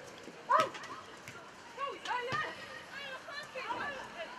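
Young players shouting short, high calls to one another across a football pitch, several voices overlapping, the loudest about half a second in.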